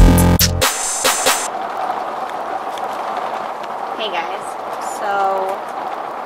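Electronic intro music with a heavy beat cuts off about half a second in. It gives way to heavy rain on an RV's roof, heard from inside as a steady hiss.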